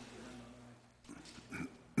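A person's voice: a held hum at an even pitch for about half a second, then a few brief, faint murmured sounds.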